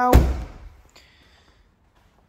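Boot lid of a BMW G20 3 Series saloon shut with a single heavy thud just after the start, dying away within half a second.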